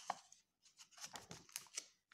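Faint paper rustling and light ticks as a page of a thick picture book is turned by hand, with one sharper sound right at the start.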